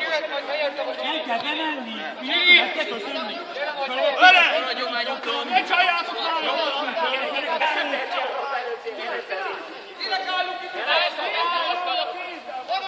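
Several people talking over one another, close by: the casual chatter of a small group during a break in play.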